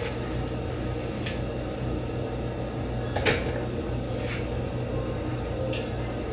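A comb drawn through the long straight hair of a human-hair wig in a few short swishes about a second apart, with one sharper knock about three seconds in, over a steady low hum.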